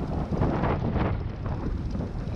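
Wind buffeting the microphone on a boat at sea, a steady low rumble.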